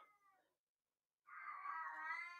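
A house cat crying faintly in the background: one long, drawn-out meow that starts about halfway through.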